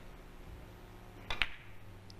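Carom billiard shot: two sharp clicks about a tenth of a second apart, the cue tip striking the cue ball and the ball meeting another ball, over a low steady hum.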